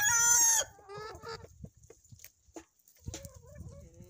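Free-range desi chickens: the end of a rooster's crow, loud and held, cuts off about half a second in, followed by scattered soft hen clucks. A lower, wavering call starts near the end.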